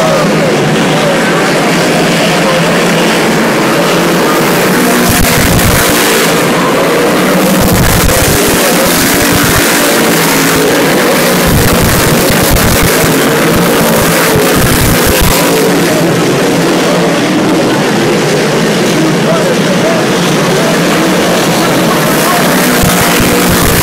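A field of dirt modified race cars running laps with their V8 engines at racing speed, a continuous, very loud engine racket that swells as cars pass close by.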